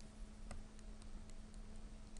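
Faint, irregular clicks from a laptop's mouse or touchpad, about half a dozen in two seconds, over a low steady hum.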